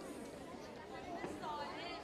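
Faint chatter of many voices in a large hall, with one high voice rising and falling in pitch about a second and a half in.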